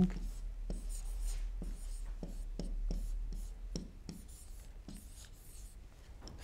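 A pen writing on an interactive whiteboard: a run of short, light scratching strokes and taps that thin out near the end.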